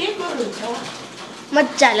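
A girl's voice speaking in short phrases, with a quieter pause in the middle.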